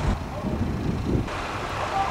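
Diesel train engine idling at a station, a steady low rumble, with wind noise on the microphone and a brighter hiss coming in about a second and a half in.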